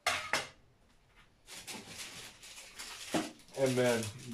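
Kitchen things clattering as a baking tray and utensils are handled: two sharp knocks at the start, then scraping and rustling with another knock. A man's voice comes in near the end.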